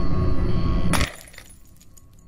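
Dark droning intro music, broken off about a second in by a glass-shatter sound effect of a screen cracking: one sharp crash, then scattered tinkling fragments that fade away.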